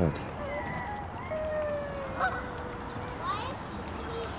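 Canada geese calling on the water: short honks about two seconds in and just after three seconds, with a longer thin call drawn out through the middle.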